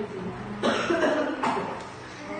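A person coughing twice, the second cough shorter, less than a second after the first.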